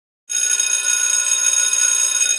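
A bell ringing, starting suddenly about a quarter of a second in and holding loud and steady, bright and high-pitched.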